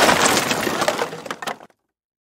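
Smashing-crate sound effect: the tail of a crash with pieces scattering and clinking, dying away and cutting off near the end.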